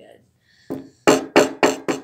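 Hammer banging on a stick of chalk folded inside a paper towel on a towel-covered table, crushing it to powder: a single blow about two thirds of a second in, then quick, even strikes about four a second.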